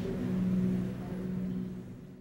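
Indoor museum gallery ambience: a steady low hum with faint room noise, dipping toward the end.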